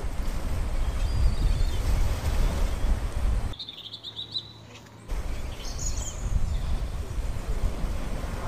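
Small birds chirping in short high calls over a steady low rumbling noise on the microphone. The rumble drops away for about a second and a half midway while the chirps carry on.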